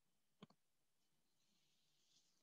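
Near silence, with one faint short click about half a second in.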